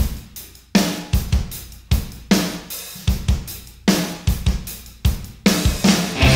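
Music: a rock drum kit playing on its own, kick, snare and cymbal hits in a steady beat, starting abruptly out of silence.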